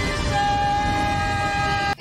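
Film score with several sustained, held chord tones over a low rumble, cutting off abruptly just before the end.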